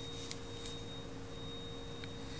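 Faint steady electrical hum with a thin high-pitched whine, and a few faint light clicks in the first second.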